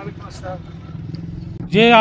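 Small motorcycle engine idling steadily with a low, even hum.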